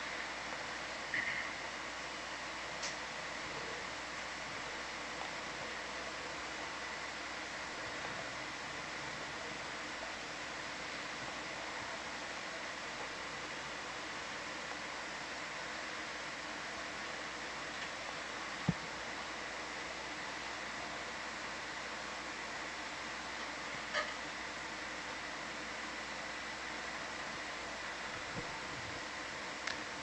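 Steady hiss of an open audio line, with a faint high steady tone and a few brief faint clicks, one sharper click just before the middle.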